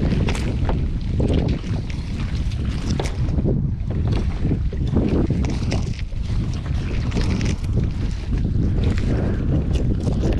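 Heavy, steady wind buffeting the microphone, with irregular rustles and splashes from a wet trammel net being hauled by hand over the side of an open boat.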